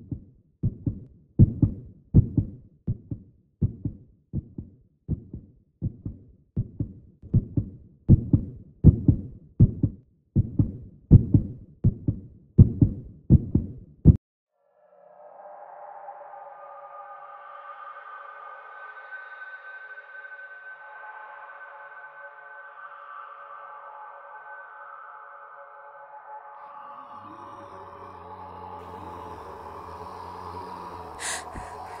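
A regular run of deep thumps, nearly two a second, that cuts off abruptly about fourteen seconds in. Then a sustained droning music pad of several held tones follows, with a low rumble joining near the end.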